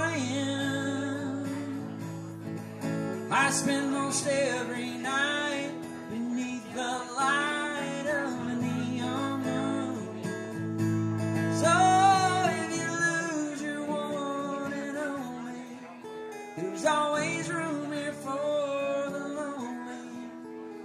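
Male voice singing a slow song over a strummed steel-string acoustic guitar, in sung phrases with short guitar-only gaps between them.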